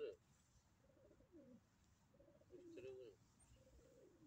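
Pigeons cooing faintly: two low, rolling coo phrases, one starting just after the beginning and another a little past halfway.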